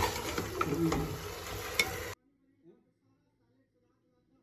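Pulao ingredients sizzling in oil in an aluminium pressure cooker while a metal ladle stirs them, with scattered clicks and scrapes of metal against the pot. The sound cuts off abruptly about two seconds in, leaving near silence.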